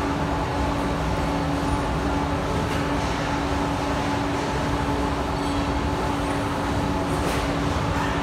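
Amada HG1003 ATC press brake running with a steady machine hum and a constant held tone.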